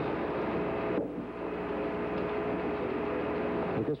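Steady radio static: a hiss with faint steady humming tones through it, as on a noisy open communications channel. It cuts off abruptly just before speech resumes near the end.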